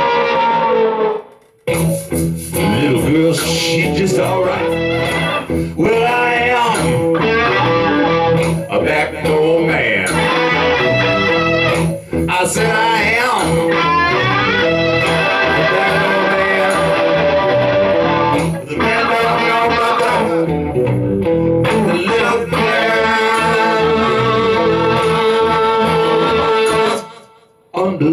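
Electric blues guitar solo with bent notes through a Marshall amp, played over a live-looped rhythm backing from a Boss RC-300 looper. The sound drops out briefly just after the start and again shortly before the end.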